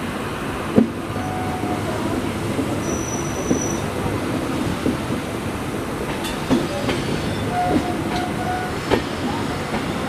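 An LHB passenger train running on a curve, heard from the coach door: a steady rumble of wheels on rail with irregular knocks as the wheels cross rail joints and points. Several short, high wheel squeals come in, most clearly after about one second, around three seconds and near eight seconds.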